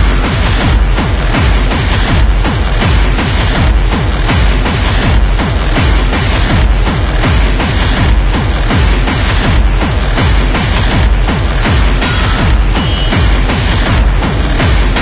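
Hardcore techno: a fast, steady, heavily distorted kick drum drives a dense electronic track, coming in right at the start.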